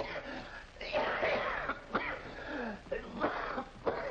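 A man coughing and clearing his throat in several fits, with strained voiced sputters between them, choking on a drink of straight bourbon that he is not used to.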